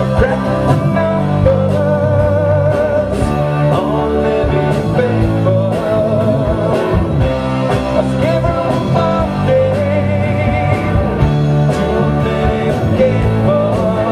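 A live rock band playing: drum kit, electric guitars and keyboard, with a wavering melody line running over the top.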